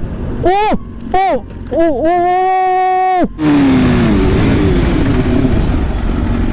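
BMW S1000RR inline-four engine revved in three quick blips, each rising and falling in pitch, then held high for about a second before cutting off about three seconds in. After that comes a steady low running sound of the bike on the move, with wind noise.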